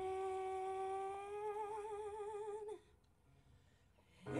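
A single voice holds one long sung note through the PA. Its pitch is steady at first, then wavers in vibrato about halfway through, and the note cuts off shortly before three seconds in. Near silence follows.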